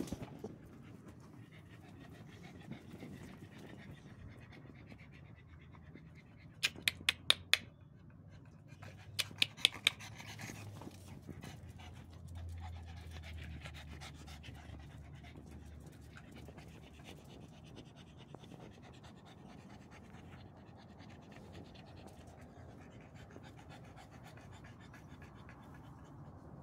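Pug panting steadily. Two quick runs of four or five sharp clicks each break in about a quarter and a third of the way through, and are the loudest sounds.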